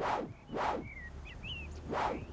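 Cartoon whoosh sound effects of an animated character flying off: one at the start, another about half a second later and a third near the end, with a few faint bird chirps between them.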